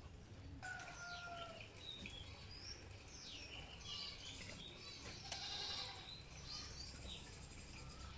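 Faint animal calls: a short pitched call, bleat-like, about a second in, then scattered high chirps through the rest over a low background hum.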